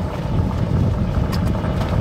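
Golf cart driving along pavement: a steady low rumble with wind buffeting the microphone, and a few light clicks late on.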